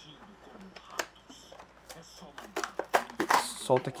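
Clear plastic blister packaging of a small action figure being handled and pulled open: a few sharp plastic clicks and crackles, one about a second in and a cluster of them later on.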